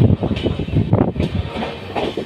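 Indian passenger train rolling along the track, heard from an open coach door: a steady low rumble with wheels clattering over the rails and a few sharper knocks.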